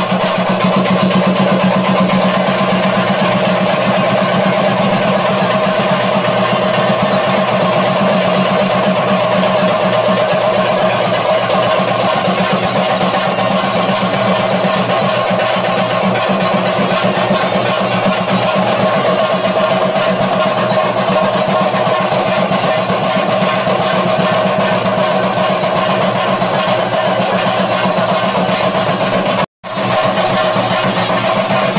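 Theyyam ritual music: chenda drums beaten in a fast, continuous roll, with a steady held pitch running through it. It breaks off for an instant near the end.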